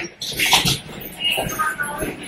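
Footsteps of several people walking along an airport jet bridge, coming as irregular scuffs and thuds.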